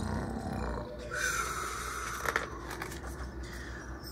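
A woman making low, breathy growling snores to voice the sleeping dragon. A single soft click from handling the book's pages comes a little after two seconds in.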